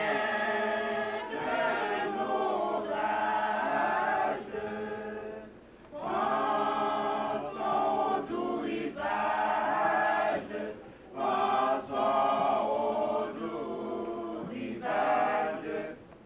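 Small mixed-voice church choir singing a cappella, held chords in phrases of a few seconds with short breaks between them.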